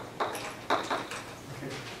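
Chalk tapping and scraping on a blackboard in a few quick, sharp strokes as a short symbol is written.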